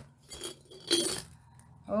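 Plastic dummies clinking and rattling against a glass jar as it is tipped upside down and they tumble out onto a mat, a few light clinks with the loudest about a second in.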